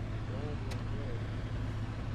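A steady low engine hum from a vehicle idling, with faint distant voices over it and a single sharp click about two-thirds of a second in.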